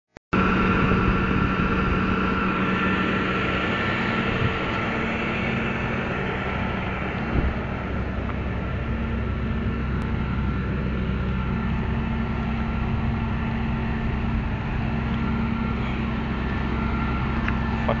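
Flatbed tow truck's engine running steadily at idle with a constant hum while the car is unloaded off the bed.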